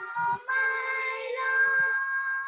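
Two children singing a devotional song together in long held notes, with a brief breath just before half a second in.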